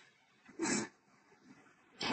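Near silence, broken a little under a second in by one short breath from a person.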